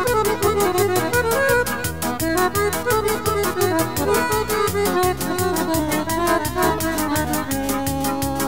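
Band music transferred from magnetic tape: an instrumental passage with a running melody over a quick, steady beat of about six strokes a second.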